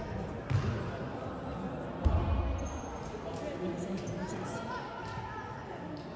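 A futsal ball thumping on the wooden sports-hall floor twice, a lighter hit about half a second in and a louder one about two seconds in, with the hall's echo.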